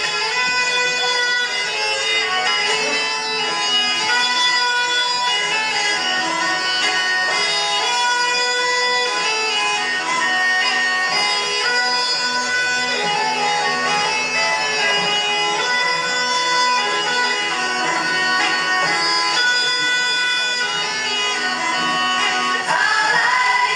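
Instrumental folk dance music, played continuously, with steady held tones over a rhythmic lower part.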